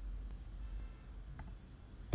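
A single light click from a computer being used for typing code, about one and a half seconds in, over a faint low steady hum.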